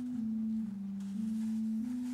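Offertory music on an organ: a single line of smooth held notes, stepping down in pitch and then back up, between fuller chords.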